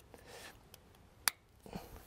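An MC4 solar cable connector snapping shut once with a single sharp click about a second and a quarter in, amid faint handling of the cables. The click is the connector's latch locking as the panel lead is joined to the inverter lead.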